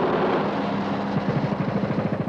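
Tank engine running: a steady, even drone with a rushing rumble over it.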